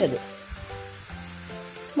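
Onion-and-spice masala sizzling in a nonstick pan as puréed tomato is poured in, with a steady hiss. Soft background music with held notes plays underneath.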